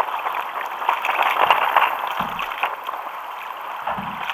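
Choppy water lapping and splashing against a sit-on-top kayak's hull, with a couple of dull knocks.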